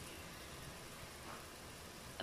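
Water heating toward a boil in a nonstick frying pan of milkfish and onion: a faint, steady hiss.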